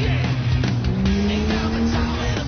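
Rock music with a mud-racing 4WD's engine revving over it, its pitch climbing steadily through the second half.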